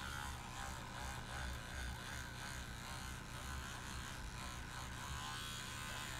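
Battery electric toothbrush buzzing steadily as it scrubs a plastic miniature under water, brushing off BioStrip 20 paint stripper and the softened old paint.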